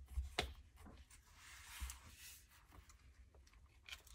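Faint handling of a binder wallet of vinyl cash envelopes as it is opened: a few soft clicks near the start, then a quiet rustle lasting about a second.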